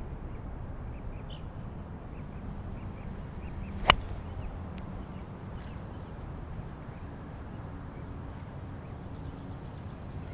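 A golf club strikes a ball off the tee about four seconds in: one sharp crack of impact over a steady outdoor background hush.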